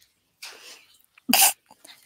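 A person's soft breath, then one short, sharp throat burst, cough-like, about a second and a half in.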